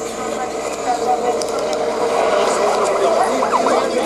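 Indistinct talking from several people at once, with vehicle noise underneath.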